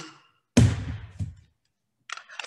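Handling noise from a light fixture held near the microphone: a sudden thump with a fading rustle about half a second in, then a faint click.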